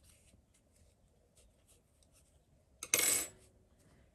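A metal crochet hook set down on a wooden table: one short metallic clatter about three seconds in, after faint rustling of yarn and wire being handled.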